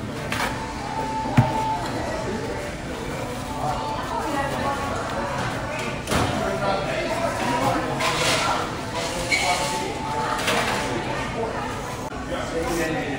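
Busy restaurant dining-room background of people talking and music playing, with one sharp knock about a second and a half in.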